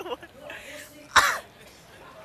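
A person coughing once, loud and close to the microphone, a little over a second in, over faint background voices.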